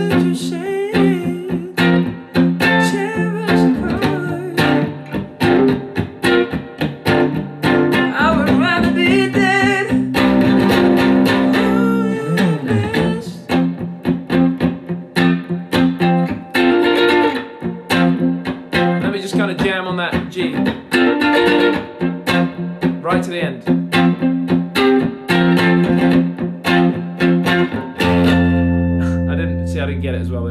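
Electric guitar played in a steady rhythm of short, repeated chord strokes. About two seconds before the end it closes on one low note on the low E string, a G at the third fret, left to ring out.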